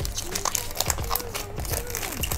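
Crinkling and quick crackling clicks of a trading-card pack wrapper and cards being handled, under soft background music.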